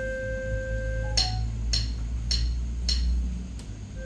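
Digital piano holding a steady electronic note that stops about a second in, then a short higher note, followed by a string of light clicks about every half second.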